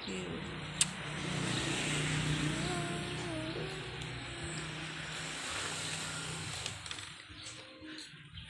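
A steady low engine hum, like a motor vehicle running or passing, that varies a little in pitch and fades out around seven seconds in, with a single sharp click about a second in.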